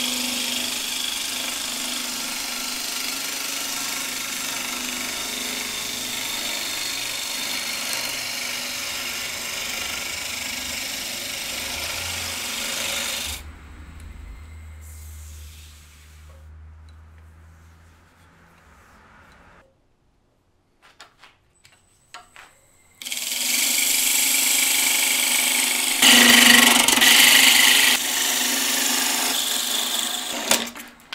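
Wood lathe spinning a paper birch blank while a turning tool cuts it: a steady hiss of cutting over the machine's hum. About 13 s in the lathe is switched off and winds down to near silence, with a few light clicks. From about 23 s it runs and cuts again, loudest near 26 to 28 s.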